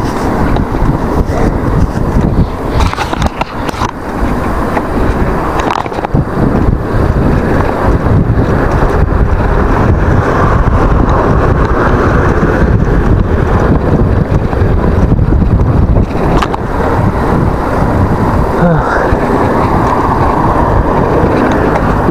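Wind rushing over an action camera's microphone together with the rolling noise of a KTM Ultra Ride mountain bike's tyres on a paved path. Loud and steady, with brief dips a few seconds in.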